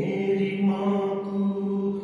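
A man singing a Punjabi devotional song in a slow, chant-like style, holding long drawn-out notes.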